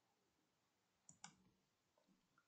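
Near silence, with two faint clicks in quick succession about a second in.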